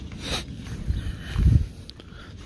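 Footsteps on grass and gravel, with low wind rumble on the microphone and a soft bump about one and a half seconds in.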